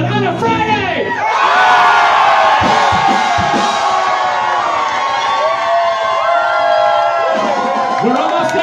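Bar crowd cheering and screaming, many voices whooping at once, taking over as the music stops about a second in; music starts up again near the end.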